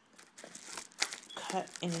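Crinkling and rustling of a Priority Mail envelope being handled and pulled open, with a sharp click about a second in.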